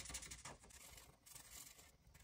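Near silence with faint, scratchy strokes of a marker colouring on paper.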